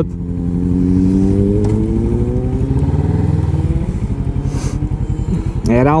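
Kawasaki ER-6n's parallel-twin engine accelerating, its note rising steadily for about three and a half seconds, then easing off.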